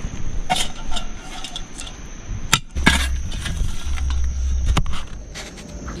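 Metal clinks and knocks of a cast-iron camp oven and its lid being handled on campfire coals: a handful of sharp strikes, the loudest about two and a half seconds in.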